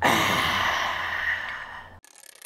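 A person's loud, breathy gasp that starts suddenly and fades away over about two seconds.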